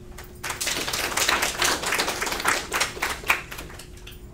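Small audience applauding: a quick, dense patter of hand claps that starts about half a second in and thins out near the end.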